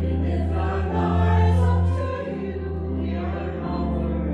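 A group of voices singing a church hymn over steady held accompanying notes, the music of the offertory.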